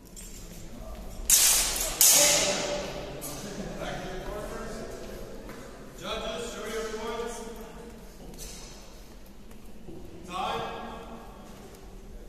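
Two loud, sharp hits about half a second apart, each ringing away in a large echoing hall, followed by raised voices calling out a few times.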